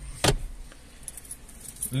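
A short clatter as things are put into a car's glove compartment, then only a faint low hum.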